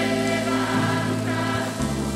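Children's and youth choir singing a hymn together, accompanied by a string band of mandolins and guitars and a digital piano.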